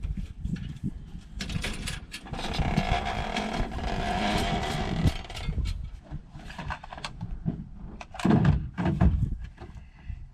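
Gear being unloaded from a pickup truck's tailgate: a push mower set down on the ground, then irregular knocks and clatters as items are moved about in the truck bed, with a scraping, sliding sound for a few seconds in the middle and a couple of heavier thumps near the end.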